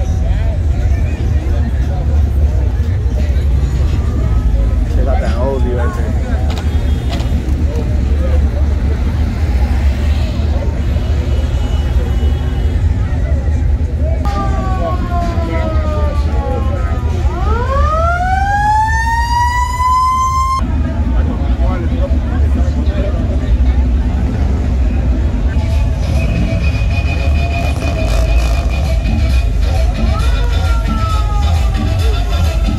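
Low, steady rumble of slow-cruising cars. In the middle comes a siren-like wail that falls, then sweeps up in pitch and cuts off suddenly.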